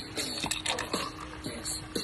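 A thick, creamy cocktail poured from a metal cocktail shaker into a glass of ice, with music playing in the background.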